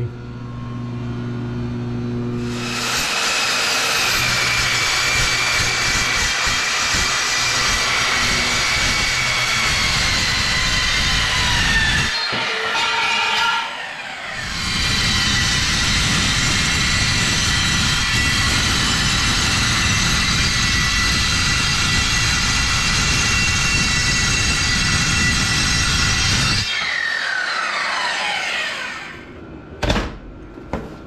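Evolution metal-cutting circular saw cutting steel diamond plate in two long cuts. It runs loud for about ten seconds, winds down with a falling whine around twelve seconds in, then makes a second cut of about twelve seconds and spins down again with a falling whine near the end.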